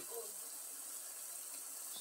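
Slices of breadfruit frying in oil in a pan, a faint, steady sizzle.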